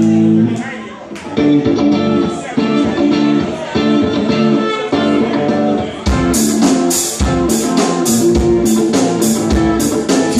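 Live rock band on amplified electric guitars playing a repeated riff. About six seconds in, the drums and bass come in and the full band plays.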